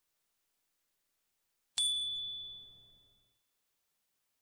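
A single high, bell-like chime struck a little under two seconds in after dead silence, ringing out and fading over about a second. It is an editing sound effect that signals the answer reveal.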